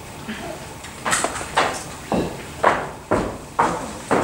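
Footsteps on hollow wooden stage boards: someone walking on at about two steps a second, six sharp knocks, some with a low thud.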